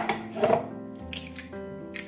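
A hen's eggshell cracked and broken open over a bowl: a few sharp clicks and cracks over soft guitar background music.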